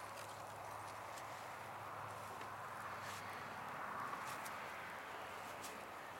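Small fire of rain-soaked kindling burning in a StoveTec rocket stove: a quiet, steady rush with a few faint crackles.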